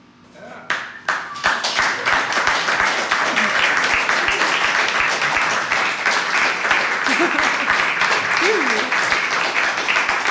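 Small audience applauding at the end of a performance: a couple of separate claps about a second in, then steady applause from about a second and a half on.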